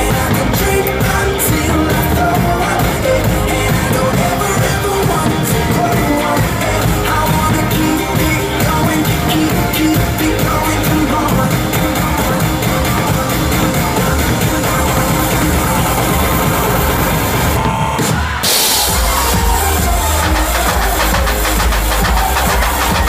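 Live drum kit played loudly over a DJ's dance-pop track with vocals. About 18 seconds in, the track briefly thins out with a short burst of hiss, then heavy bass comes back in.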